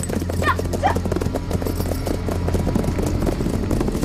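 Hoofbeats of several ridden horses moving off together, a dense run of clopping. In the first second a rider shouts "jià, jià" twice to urge his horse on.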